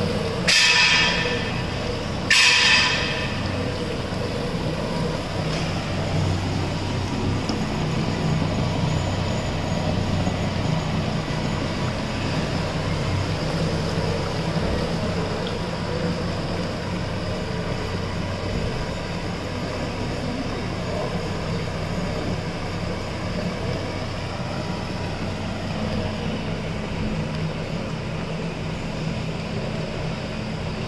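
Cow-dung screw-press dewatering machine running: its 5 HP three-phase motor drive and slurry pump give a steady electric hum, while the press pushes out dewatered dung. Two short, loud hissing rushes come in the first three seconds.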